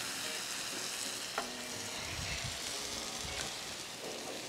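Minced garlic and diced bell peppers sizzling steadily on a hot flat-top griddle, with a single short tick about a second and a half in.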